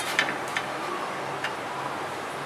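A few light clicks and taps as fingers set and press shaped chapatis on an iron tawa, over a steady hiss.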